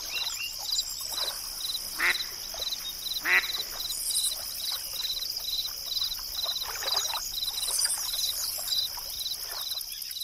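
Forest-lake nature soundscape from a Relaxound Zwitscherbox Lakeside: ducks quacking over a steady cricket chirp of about two to three pulses a second, with scattered bird chirps. The loudest quacks come at about two and three seconds in.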